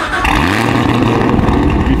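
Hennessey Exorcist's supercharged V8, fitted with headers and a near straight-piped exhaust. Its revs climb quickly at the start, then it settles into a steady, loud drone.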